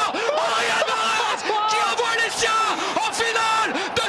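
A football commentator yelling in a string of long, high-pitched cries at a last-minute free-kick goal, over a cheering stadium crowd.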